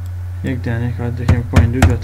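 Three sharp keyboard clicks in the second half, as a value is typed into a field, over a man's speaking voice and a steady low electrical hum.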